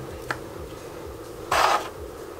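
A small cooling fan hums steadily in the background, with a brief scrape of parts being handled about one and a half seconds in, the loudest sound, and a small click near the start.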